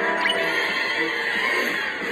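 Cartoon soundtrack music with a sound effect that glides down in pitch in the second half, played through a TV's speaker.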